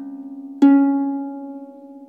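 A single string of a pedal harp plucked about half a second in, ringing and slowly fading, over the fading tail of an earlier plucked note.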